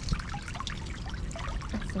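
Water trickling and dripping out of a freshly hauled oyster cage back onto the water surface, many small irregular spatters.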